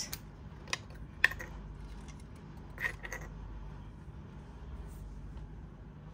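A few light clicks and taps from a glass spray bottle of dry oil and its metal cap being handled. The sharpest click comes about a second in.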